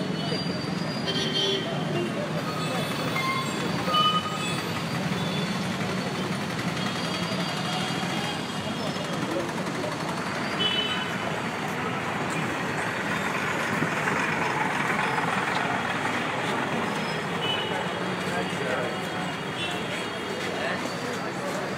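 Busy street ambience: road traffic with a crowd talking, and short horn toots now and then. The traffic noise swells for a few seconds past the middle.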